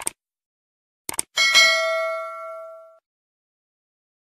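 Animation sound effects: a mouse click, then a quick double click about a second in, followed by a notification-bell ding that rings out for about a second and a half.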